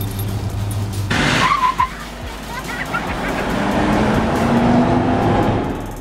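Motorboat engine running, then about a second in a sudden loud rush of spray and wind noise as the boat speeds across the water, with the engine note rising later on.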